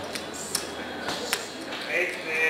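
Plastic casino chips clicking as they are set down on a roulette table, with two sharp clicks about half a second and a little over a second in, over a low murmur of voices.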